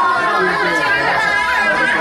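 Several people talking at once, a busy overlapping chatter of adult voices.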